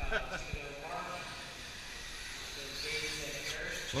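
Indistinct talk from people in the background, with a light high hiss throughout; a man starts to speak right at the end.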